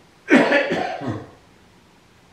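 A man coughing into his hand: a short fit of two or three coughs, starting about a quarter second in and lasting about a second.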